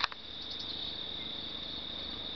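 Crickets chirping in a steady, high-pitched trill, with a short sharp click right at the start.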